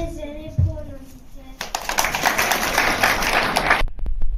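Audience applause that starts about one and a half seconds in, goes on for about two seconds, and cuts off abruptly. Just before it, a child's voice finishes a sung line.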